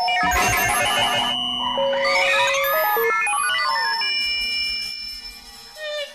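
Early analog electronic tape music, Buchla synthesizer tones. A short burst of noise opens it, then rapid stepping beeps and gliding tones that swoop up and down, and held high tones that fade near the end.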